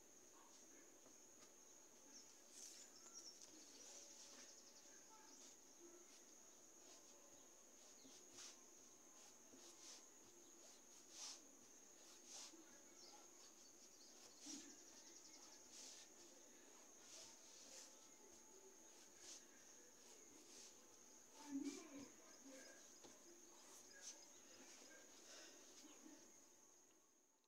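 Near silence: faint, scattered soft taps and rustles of tailor's chalk marking fabric and the fabric being handled on a table, over a faint steady high-pitched tone.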